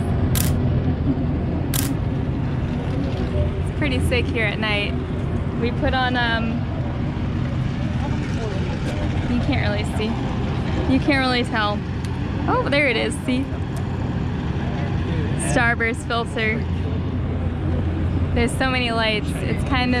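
Voices talking in short bursts over a steady low engine rumble from the track. Two sharp clicks sound in the first two seconds.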